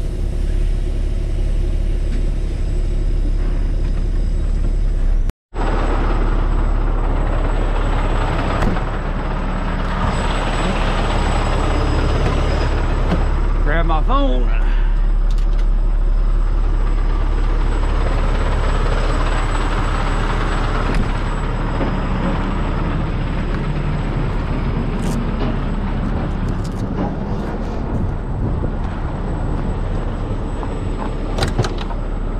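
Heavy tow truck's diesel engine running, heard from inside the cab as a loud, steady low drone. The sound cuts out for a split second about five seconds in, a brief wavering tone rises and falls at about fourteen seconds, and a few sharp clicks come near the end.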